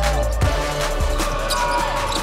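A basketball dribbled on a hardwood court, two bounces about half a second apart, over background music.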